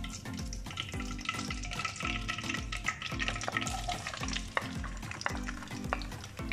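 Chopped onions tipped into hot melted desi ghee in a wok, sizzling as they start to fry. Under it runs a steady background music beat.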